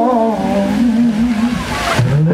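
Live blues-rock band playing loud, with a lead instrument holding long bent notes that waver in pitch over the band.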